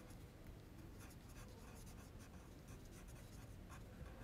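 Faint scratching of a Caran d'Ache Luminance colored pencil on sketchbook paper as short lettering strokes are written.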